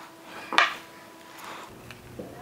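A table knife set down with a sharp clink, followed by a fainter knock of handling on a paper plate.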